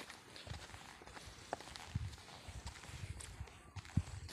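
Faint footsteps of a person walking along a dirt path through grass: soft, irregular low thuds, several a second.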